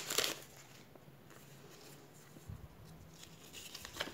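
Faint crinkling and rustling of a Panini sticker packet's wrapper being torn open and the stickers handled. There is a short crinkle at the start, then near quiet, with a few soft rustles halfway through and near the end.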